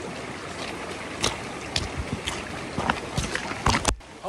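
Small forest stream running steadily, with the scattered knocks of hikers' boots stepping on stone and gravel as they cross. A few louder knocks near the end as the camera is handled.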